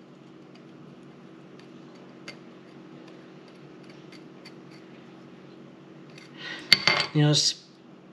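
Faint clicks and scraping of a small hand tool working on a beaver's jawbone, picking out cartilage and tissue, over a steady low hum. A sharp click comes near the end.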